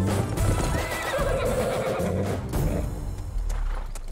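A horse whinnies a little after a second in, over film score music with a heavy low bass, and hoofbeats of galloping horses underneath.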